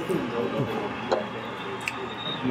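Background chatter of diners in a busy restaurant, with a couple of faint clicks.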